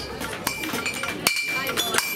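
Hammer striking metal several times, each strike leaving a short ringing tone, amid a crowd's chatter.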